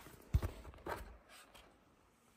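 Handling knocks from a plastic laptop being opened by hand: a dull thump about a third of a second in, then a lighter click about a second in as the lid is lifted.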